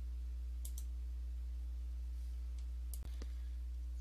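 Steady low electrical hum on the microphone line, with a few faint computer mouse clicks, two a little under a second in and two more about three seconds in.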